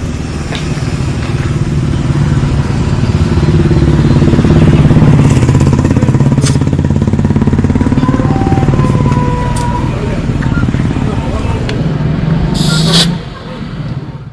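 A motor running with a steady low drone and a fine regular pulse, swelling louder towards the middle and easing off. A brief hiss comes near the end.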